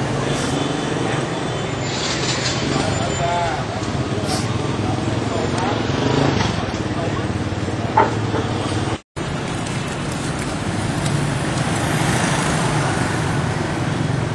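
Busy street din: steady road traffic with many people chattering. There is one short sharp sound about eight seconds in, and the sound cuts out for a moment just after.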